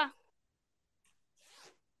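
Near silence on a video call, with a brief faint rustle about one and a half seconds in.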